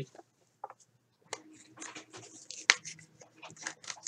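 Thin plastic card sleeve crinkling and scraping as a cardboard baseball card is slid into it, a string of small rustles and clicks starting about a second in.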